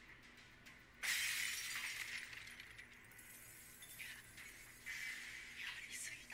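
Anime sound effect of a giant ice attack: a sudden crackling, shattering burst about a second in that slowly dies away, with smaller crackles later on.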